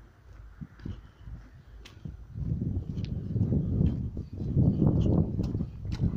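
Low, uneven rumbling and rustling noise on the microphone that comes in about two seconds in and grows louder, after a few faint clicks.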